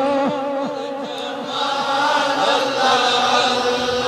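Devotional chanting by voices, dipping in loudness about a second in and swelling again toward the end.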